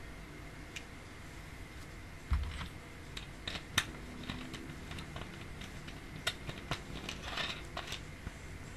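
A plastic drink bottle handled close to the microphone: a low thump about two seconds in, then a run of light, irregular plastic clicks and crackles.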